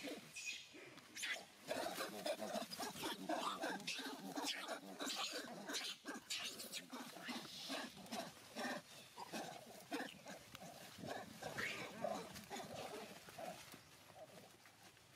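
Macaque monkeys calling: a busy, irregular run of short squeals and grunts, one after another with hardly a pause.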